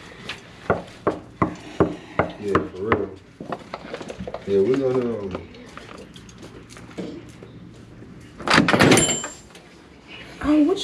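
A hotel room door: a run of sharp knocks on it, a short voice sound midway, then about eight and a half seconds in a loud clack as the latch gives and the heavy door swings open.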